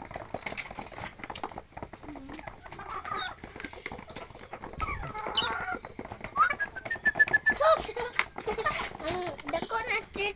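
A flock of native chickens feeding at a trough: many small pecking clicks, with short clucks and calls from the birds and a quick run of short notes about seven seconds in.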